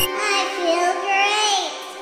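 A break in hardware-synth music: the bass and beat drop out, leaving a single high, voice-like tone that wavers and glides up and down for about a second and a half, then fades.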